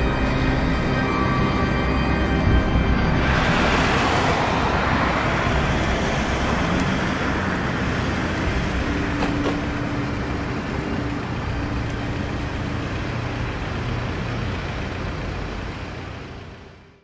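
City street traffic: road noise from passing cars, with one vehicle passing close about three to five seconds in.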